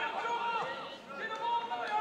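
Distant raised voices, players shouting calls to each other on the football pitch, with the hollow sound of a sparsely filled ground.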